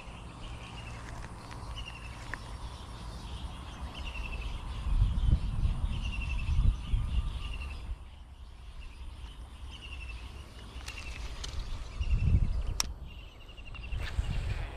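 A bird calling over and over in short, high, falling notes every second or two. Low rumbling noise on the microphone swells in the middle and again near the end.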